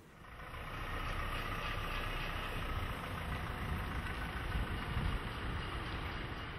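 A car driving off, engine and tyres running steadily after swelling up over about the first second.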